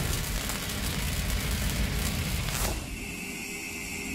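Logo-reveal sound effect: a dense, crackling rumble and hiss, with a short falling sweep nearly three seconds in, after which a high ringing tone lingers as the sound slowly fades.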